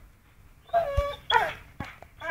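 Pit bull giving two short, high-pitched whining yelps about a second in, with a sharp click between them and another just after.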